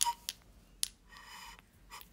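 A knife cutting into a red cabbage: three sharp, crisp snaps in the first second as the leaves split, then a short rasping crunch as the blade goes further in.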